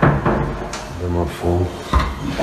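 A brief indistinct murmured voice, two short syllables about a second in, over rubbing handling noise, with a sharp click near the end.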